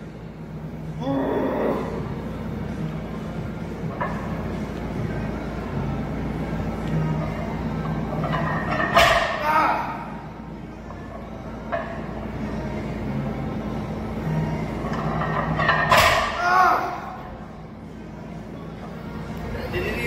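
A man's voice shouting or straining in three short bursts, about one, nine and sixteen seconds in, over a steady low hum and faint background music.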